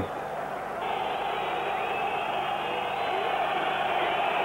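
Football stadium crowd noise: a dense mass of fans' voices that swells about a second in.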